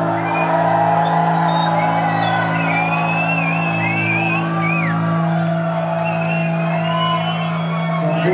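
A rock band holding and ringing out a final sustained chord, with audience whoops and cheers rising over it.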